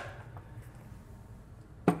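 An LS engine's intake manifold being handled and set down, with a short knock as it is lifted away and a louder single knock near the end as it is put down. A faint low hum sits underneath.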